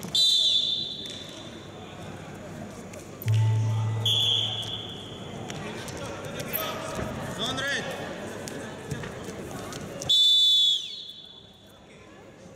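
Referee's whistle in a wrestling bout. One blast comes at the start to set the wrestlers going, a shorter one about four seconds in, and the loudest blast about ten seconds in stops the action. A low buzz sounds briefly about three seconds in, under a steady murmur of arena noise.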